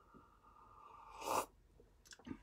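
A person sipping brewed coffee from a glass carafe: a faint drawn-in sip builds for about a second and ends in a short, loud slurp.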